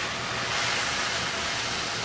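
Stir-fry sizzling steadily in a wok over high heat, an even hiss just after a splash of wine down the hot wok's edge.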